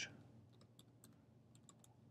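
Faint keystrokes on a computer keyboard: a quick run of light taps, starting about half a second in, as a short word is typed.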